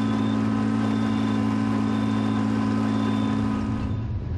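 Small engine of a riding rice transplanter running at a steady, unchanging speed, with a faint high tone coming about once a second. The engine sound breaks off near the end.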